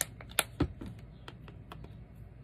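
A few light, sharp clicks and taps from hands handling plastic craft supplies, an ink pad case and a water bottle, on a tabletop. The loudest click comes about half a second in.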